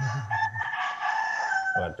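A rooster crowing, one long sustained call whose pitch sags slightly at the end, heard through a participant's microphone on a video call.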